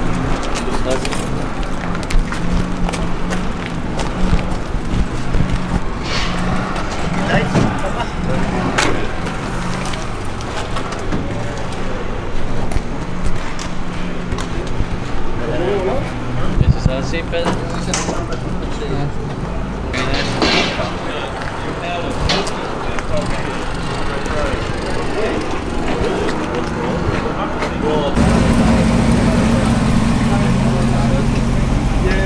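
Indistinct voices over a steady low hum. The hum grows louder about two seconds before the end.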